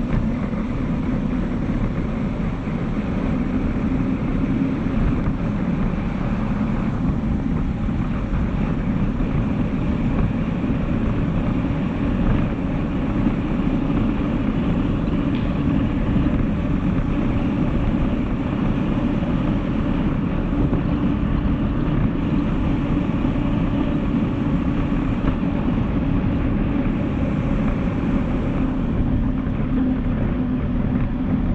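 Steady rushing noise of a bicycle in motion: wind on the handlebar camera's microphone and the tyres rolling on a concrete floor, even and unbroken.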